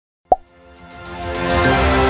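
A short pop-like click sound effect as an on-screen play button is tapped, then background music fading in, at full level about a second and a half in.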